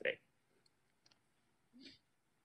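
A pause in conversation: the end of a spoken word, then near silence with a couple of very faint clicks, and a short, faint voice sound just before the end.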